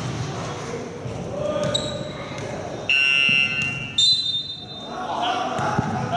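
Basketball game in an echoing sports hall: a referee's whistle gives one sharp, steady blast about three seconds in and a short second peep about a second later, over the bounce of the ball and players' voices.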